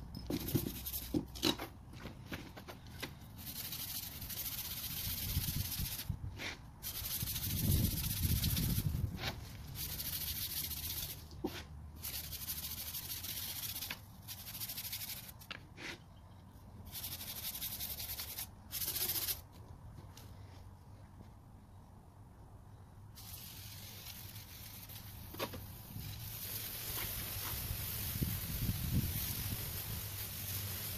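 Garden hose spray nozzle hissing in on-and-off bursts as water is sprayed onto whitewall tires, with a long pause a little past halfway and then a steady spray through the last several seconds. A low rumble comes about a quarter of the way in.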